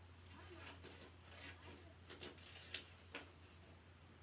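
Quiet paper handling with a few soft, irregular snips of scissors cutting a paper shape along drawn lines.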